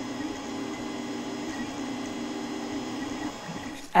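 Creality Ender 3 3D printer running mid-print: a steady mechanical hum that drops away shortly before the end.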